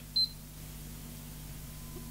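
Digital multimeter's continuity buzzer giving one brief high chirp a moment in, then a faint steady low hum.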